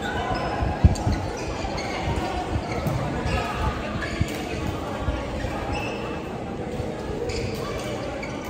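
Badminton play in an echoing sports hall: players' feet thudding on the court floor, the strongest about a second in, and sharp racquet strikes on a shuttlecock, over the voices of players.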